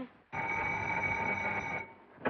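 Telephone ringing: one steady ring of about a second and a half that stops abruptly.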